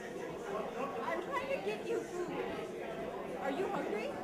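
Crowd chatter: many people talking at once in overlapping conversations.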